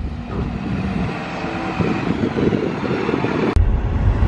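Double-decker bus's engine running as it pulls round a corner, with street traffic noise. About three and a half seconds in, a sudden cut to the deep rumble inside a moving campervan's cabin.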